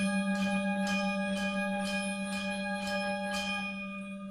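Gamelan music: bronze metallophones and kettle gongs struck in an even, repeating pattern of about three ringing strokes a second, over a steady low hum.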